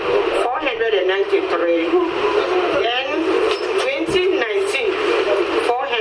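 Only speech: a woman talking into a handheld microphone.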